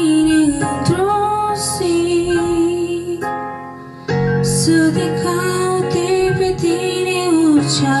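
Slow song with a female lead voice over soft accompaniment. The music drops away briefly about three seconds in, then comes back.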